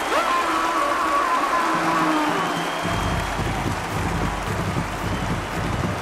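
Stadium crowd noise with a long held tone over it, then marching band music with a steady drum beat coming in about three seconds in.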